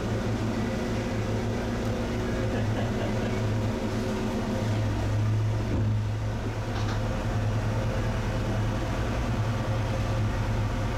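Glass-bottom boat's engine running steadily at low speed, a loud, even low hum heard from inside the hull.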